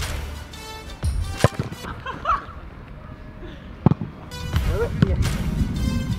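A football being struck twice with sharp thuds, about a second and a half in and again near four seconds, over background music.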